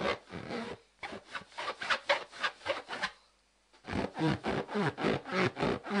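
A hand rubbing the skin of an inflated balloon, giving a rapid run of squeaky strokes, about five a second. The rubbing pauses for under a second a little after the middle, then starts again.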